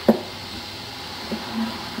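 Steady low rush of a propane burner heating a large pot of tomato sauce, with a short voice sound right at the start and a faint brief murmur about a second and a half in.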